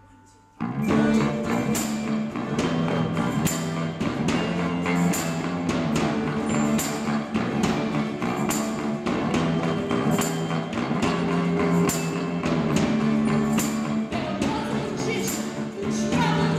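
A live band's music starts suddenly about half a second in, after a brief quiet moment, and carries on with a steady beat of percussion hits over sustained low instrumental notes.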